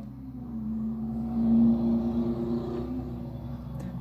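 A Ford Mustang driving past on the road, its engine drone swelling to a peak about two seconds in and then fading away.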